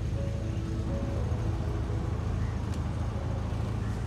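Houseboat's inboard diesel engine running steadily while the boat is under way: a continuous low drone.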